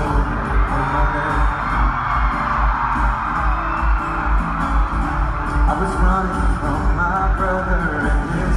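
Live amplified pop music in an arena: a solo singer with acoustic guitar over a steady bass beat, heard through a phone microphone.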